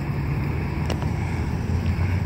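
Steady low hum or rumble, with one faint click about a second in.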